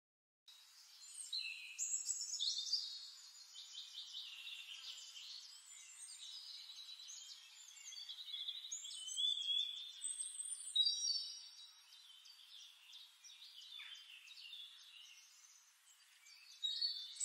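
Several songbirds singing at once in woodland: overlapping high whistles, chirps and rapid trills.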